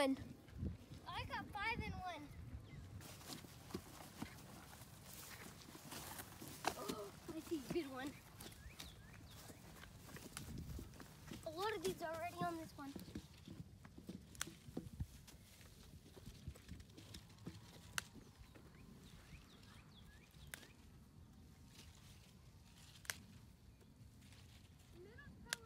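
Quiet outdoor sound of a child picking strawberries by hand, with scattered light clicks and knocks. Brief stretches of voices come near the start, after about seven seconds and about twelve seconds in.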